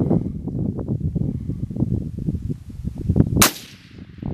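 Wind buffeting the microphone, then a single sharp rifle shot about three and a half seconds in, from a bolt-action military rifle.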